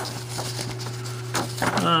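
A steady low hum with a fainter higher tone over it, a few soft clicks in the middle, and a man's drawn-out 'um' near the end.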